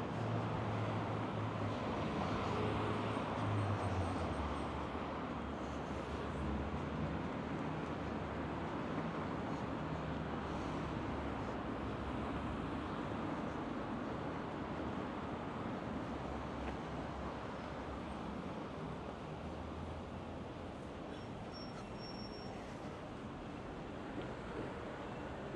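City street traffic noise, steady and unbroken, with a low rumble that is strongest in the first few seconds and slowly eases off.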